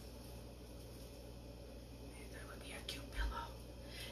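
Quiet room tone with a low steady hum, and a brief faint whispered voice about two to three seconds in.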